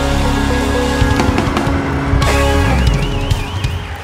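Live band playing loud, heavy rock with deep sustained bass notes and pounding drums, dying away in the last second.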